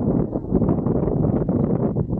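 Loud, rough wind noise buffeting the camera microphone.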